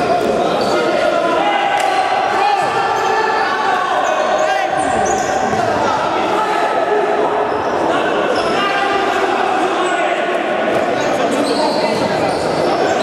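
Indoor futsal game: the ball being kicked and bouncing on the hardwood court, under a steady din of players' shouts and voices echoing around a large sports hall.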